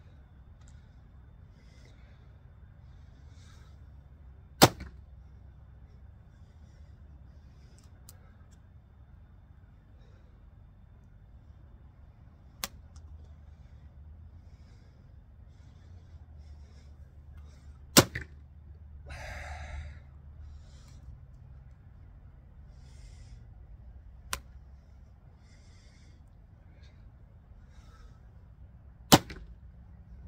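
Recurve bow (Samick Sage) shot three times, each shot a single sharp snap of the released string, about five, eighteen and twenty-nine seconds in. Fainter clicks and a brief rustle fall between the shots.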